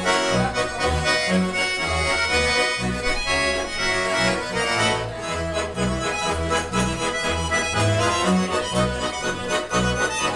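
Two Schwyzerörgeli (Swiss diatonic button accordions) playing a lively Swiss Ländler tune in duet, with a double bass sounding low notes on a steady beat.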